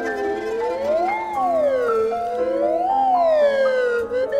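Contemporary chamber music: a single pitched line slides up and down twice like a siren, over steady held notes from the ensemble.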